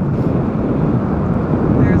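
Wind gusting over the microphone: a loud, steady low rush.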